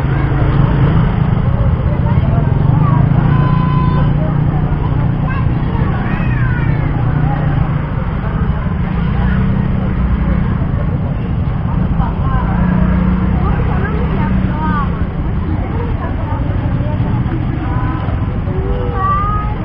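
Voices of many people talking over motor vehicle engines running, with a steady low rumble underneath.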